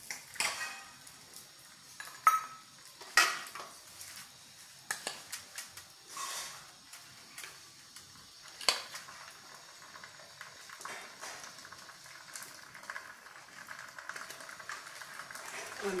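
Stainless-steel kitchenware clinking: a handful of sharp metal clinks with a brief ring as steel bowls and a spoon knock together during the first half. Later, softer scraping as a spoon stirs chopped amla pickle in a steel bowl.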